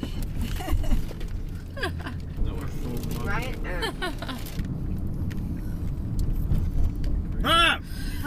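Steady low road rumble inside a moving car's cabin, under laughing and brief voices, with a loud high-pitched voice sound near the end.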